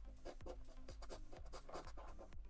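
A large coin scratching the coating off a scratch-off lottery ticket in quick repeated strokes, over faint background music with a steady beat.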